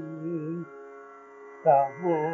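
Solo male voice singing a Carnatic kriti in raga Kedaragowla over a steady drone. A held, wavering note ends about two-thirds of a second in, leaving only the drone, and the voice comes back in near the end.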